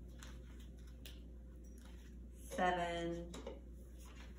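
A woman's voice saying one drawn-out word about two and a half seconds in, most likely one of the numbers she counts as she places stickers. Faint small clicks and rustles come from a sheet of star stickers being handled.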